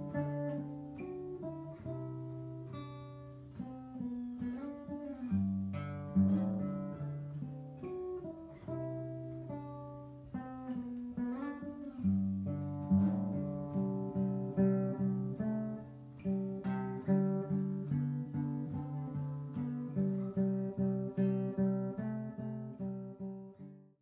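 Solo acoustic guitar, picked note by note, with a few sliding notes. From about halfway it settles into a steady repeating pattern and fades out at the very end.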